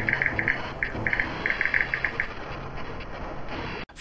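Intro logo-animation sound effect: rapid, short, high electronic beeps in irregular clusters over the first two seconds, like a text-typing effect, over a faint low background that cuts off just before speech begins.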